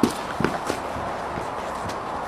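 A few footsteps on concrete paving slabs, heard as scattered faint clicks, over a steady outdoor hiss.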